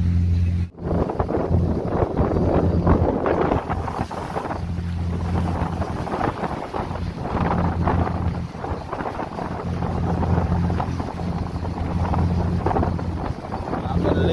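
Motor vessel under way at sea: the boat's engine hums steadily and low beneath the surging rush of water breaking and spraying along the hull, with wind buffeting the microphone. The sound cuts out briefly about a second in.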